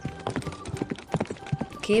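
Horse hooves clip-clopping, an added sound effect heard as a quick, irregular run of sharp clicks. A horse whinny starts right at the end.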